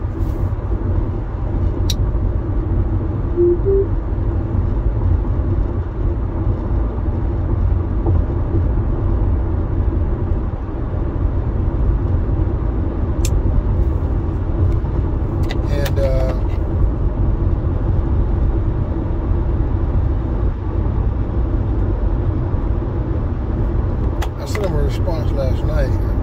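Steady road and engine noise inside a moving car's cabin: a low rumble with a hiss over it. A few faint clicks are heard about two, thirteen and sixteen seconds in.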